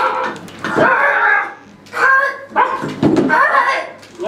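A person's voice making bark-like calls in several short bursts, with no clear words.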